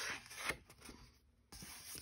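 Faint rustling of paper as sheets in a 6x6 patterned paper pad are turned by hand, with a light tap or two and a brief pause about halfway.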